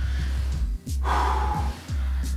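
A man breathing hard and gasping for air as he recovers from a heavy barbell set, over background music.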